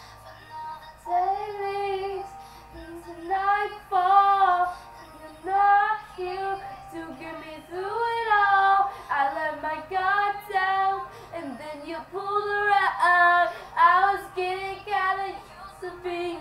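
A young girl singing a pop ballad solo: a string of sung phrases with held, wavering notes and short breaths between them.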